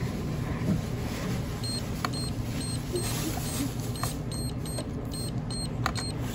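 Card-terminal keypad beeping: a short high beep for each key as a mobile phone number is entered, about ten beeps in quick runs, over steady checkout background hum. A few sharp clicks come between them.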